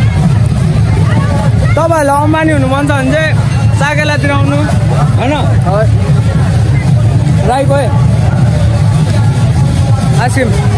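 Crowd hubbub: several voices calling and talking over one another over a steady low rumble.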